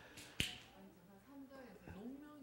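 A single sharp click about half a second in, followed by faint, low murmured speech.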